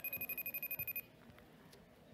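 Mobile phone ringing: a rapid electronic trill on a high, steady pitch that cuts off suddenly about a second in.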